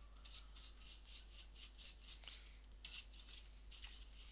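Faint, quick scratchy brushing strokes, several a second: a small brush scrubbing debris away during a laptop hinge repair.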